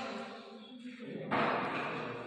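A voice: the end of a spoken word, then a loud breathy vocal sound starting past the middle.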